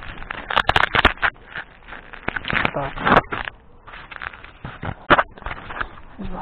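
Handling noise on the camera: fingers knocking, rubbing and scraping against the camera and its mount in a string of irregular clicks and rustles, sharpest about a second in and again about five seconds in.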